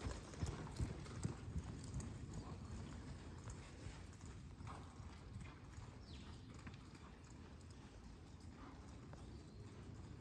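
A horse's hoofbeats at a walk on soft dirt arena footing, dull thuds that are loudest in the first couple of seconds as the horse passes close, then grow faint as it moves away.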